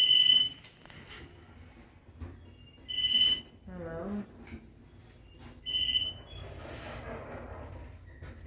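Elevator car's electronic beep: a high, steady tone about half a second long, repeating roughly every three seconds. A low hum sits underneath from about two seconds in.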